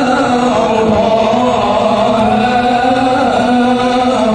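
Shalawat, devotional praise of the Prophet, chanted by voices in long held notes that slowly rise and fall without a break.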